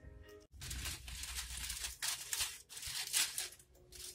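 Aluminum foil crinkling in irregular bursts as it is peeled off a foil pan.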